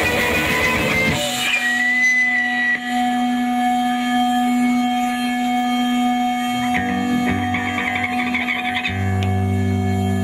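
A live rock band plays at full tilt and cuts off about a second in. Held, effects-laden electric guitar tones are left ringing as a steady drone. Low sustained notes come in near the end.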